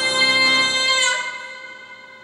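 A woman's sung note held steady over piano accompaniment, ending about a second in; the piano chord then rings on and fades away.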